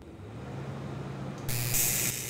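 Argon shielding gas hissing from a TIG torch, then about one and a half seconds in the AC TIG arc of a Lincoln Precision TIG 185 strikes on aluminum and jumps to a loud buzzing hiss. The machine is at 100 amps with the AC balance turned fully toward penetration, roughly 70% electrode-negative.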